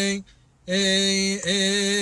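A solo male cantor chanting a Coptic hymn unaccompanied, holding long steady notes. One note ends just after the start, a short breath follows, then a new long note begins and wavers briefly in pitch midway.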